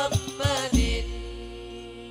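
Hadrah ensemble's hand frame drums (rebana) playing the closing strokes under chanted singing, ending on a last stroke with a low boom about three-quarters of a second in. The voices then hold the song's final note, which fades away steadily.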